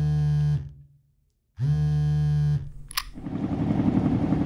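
Two identical sustained, buzzy electronic notes, each about a second long with a second of silence between them, then a short swoosh and a rising wash of noise that leads into music.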